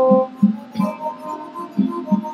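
Mvet, the Fang harp-zither, being plucked in a rhythmic pattern. Short low notes repeat a few times a second under higher notes that ring on.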